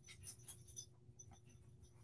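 Near silence, with a few faint, short noises from puppies in the background.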